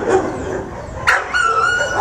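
Dog giving a short yip about a second in, followed by a high, steady whine lasting about half a second.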